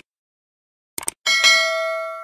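Mouse-click sound effects as the subscribe button is pressed, then a bright bell ding, the notification-bell sound effect, that rings on and slowly fades.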